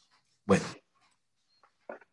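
A man says 'bueno' about half a second in. Near the end come two faint, very short yelps from an animal in the background.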